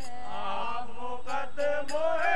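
A young girl's voice singing a Sikh hymn (shabad kirtan) in a chanting style, held notes breaking into sung syllables.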